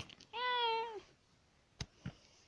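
A single drawn-out cat meow lasting well under a second, its pitch dipping at the end, followed by a sharp click near the end.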